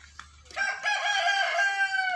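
A rooster crowing: one long crow beginning about half a second in.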